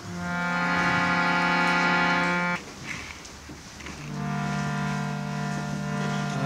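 Harmonium, a hand-pumped reed organ, holding two long steady chords. The first cuts off suddenly after about two and a half seconds, and the second comes in about four seconds in.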